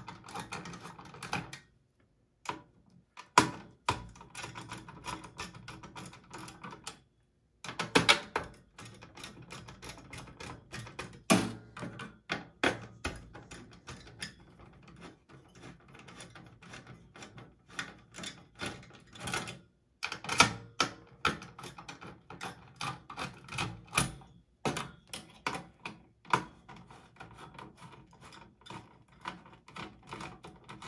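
Phillips screwdriver unscrewing the CPU cooler heat-sink screws on a desktop motherboard: a run of irregular light clicks and ticks from the bit and screws, with a few louder sharp clacks.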